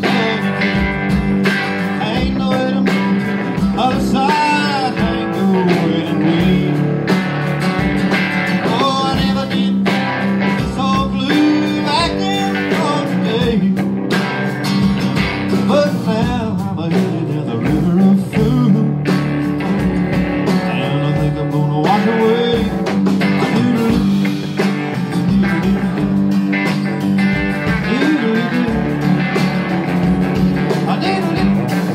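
Live band playing: electric guitar, strummed acoustic guitar and drums.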